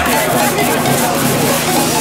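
Electronic dance music track with its bass line dropped out for a moment, with voices over it. The bass comes back in at the end.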